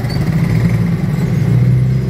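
Motorcycle engine running steadily at low speed, heard up close from the seat behind the rider, a little louder about one and a half seconds in.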